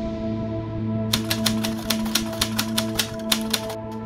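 Typewriter keys clacking in a quick irregular run, about six strikes a second, from about a second in until shortly before the end, over ambient music with steady held tones.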